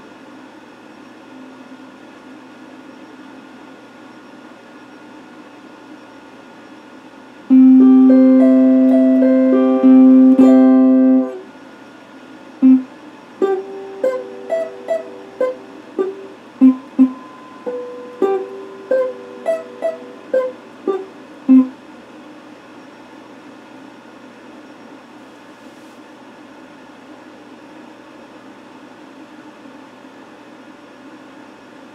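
Electric guitar: a loud chord is struck and held for about four seconds, then a run of single plucked notes follows for about nine seconds. A steady low hiss lies under the playing and is all that is heard before and after it.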